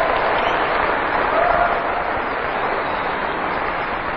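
Audience applauding, the clapping slowly dying down.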